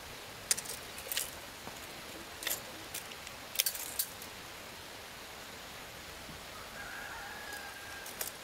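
Light clicks and rattles of a steel tape measure and pencil being handled against wooden planks, half a dozen sharp ticks in the first half. Near the end a faint drawn-out call, a distant rooster crowing.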